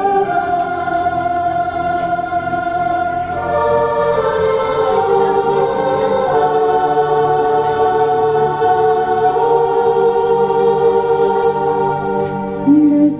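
Recorded backing music playing a Hindi song's instrumental introduction, in long held notes with a choir-like sound.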